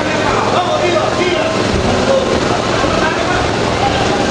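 Crowd of spectators shouting and talking over one another, a steady din of many overlapping voices with no single speaker standing out.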